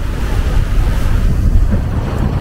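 Wind buffeting the microphone over the rush of water along the hull of a sailing yacht under way, a steady low rumble with no distinct events.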